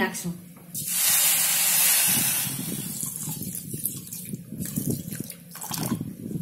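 Water poured in a stream onto sugar crystals in a metal wok, the start of a sugar syrup. The pour begins about a second in as a bright hiss, then turns lower and fuller as the water pools over the sugar.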